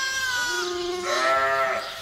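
Sheep bleating: a high, steady call that ends about half a second in, overlapped by a lower, longer call that runs until near the end.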